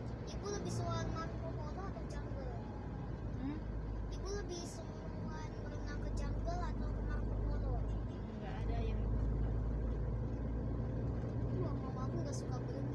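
Steady low rumble of a car's engine and tyres, heard inside the cabin while driving, with faint indistinct voices over it.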